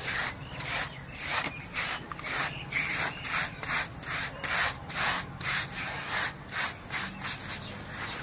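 Hands rubbing and sweeping loose sand across a concrete floor, a gritty scrape repeated in quick strokes about two or three times a second.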